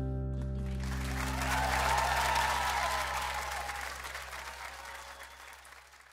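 An acoustic guitar's last strummed chord rings on and slowly dies away. Audience applause starts about a second in, swells, then fades out.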